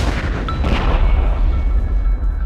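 Logo sting sound effect: a loud burst with a deep rumble, like a pop or explosion, dying away slowly, with faint high ringing tones coming in about half a second in.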